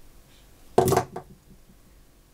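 Pliers' cutting jaws snipping through a thin, soft copper wire: one sharp snip a little under a second in, followed by a faint click.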